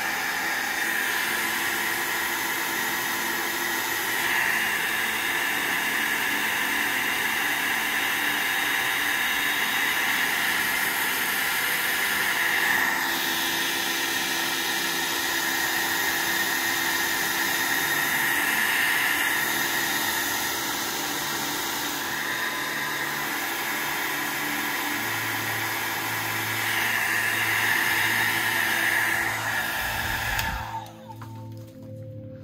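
Handheld hair dryer running steadily on its low setting, blowing air over wet watercolor paper to dry the paint. The rush of air swells and eases slightly as the dryer is moved about over the paper.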